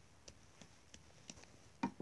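Near silence of room tone with a few faint light ticks, then a sharper click near the end as a plastic toy doll is handled.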